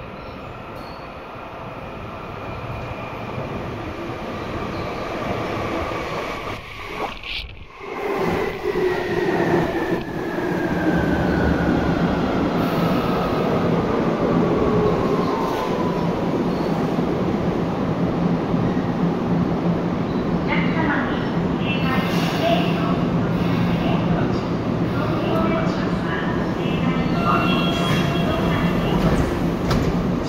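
Tokyu 8500 series electric train arriving at an underground platform: a rumble that swells as it comes in, then a motor whine falling steadily in pitch for about eight seconds as it brakes to a stop. In the second half, clicks and short tones as the train stands and its doors open.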